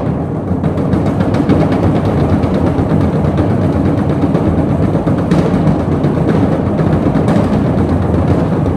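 Percussion duo playing drums and timpani with dense, rapid strokes that run together into a continuous low rumble.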